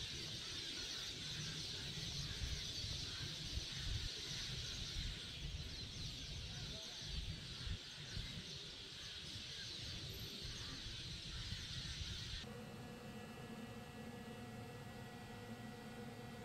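Dense early-morning chorus of many birds chirping together, over a low, uneven rumble of wind on the microphone. About twelve seconds in it cuts off sharply to a steady mechanical hum with a few constant tones, from a restaurant kitchen's exhaust hood fans.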